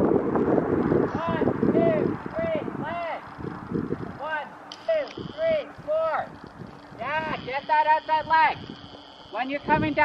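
A person's voice calling out short rising-and-falling sounds, about two a second, coming quicker near the end. Under it, low rumbling noise, loudest over the first three seconds.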